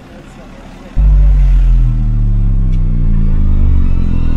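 A loud, deep droning hum starts suddenly about a second in and holds steady, with a few higher overtones slowly falling in pitch.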